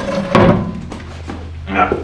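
A wooden board being laid over an open cellar shaft, with one thunk of wood about a third of a second in, followed by lighter scraping and handling.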